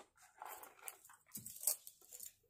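Metal-bead necklace being lifted off a display bust: a few irregular bursts of clinking and rustling handling noise, the sharpest about three-quarters of the way through.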